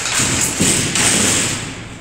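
Steel-mesh bed frame being moved, knocking with a few dull thuds over a steady hiss.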